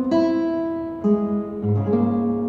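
Nylon-string classical guitar played fingerstyle: a chord plucked just after the start, another about a second in, and a low bass note near the end, each left ringing.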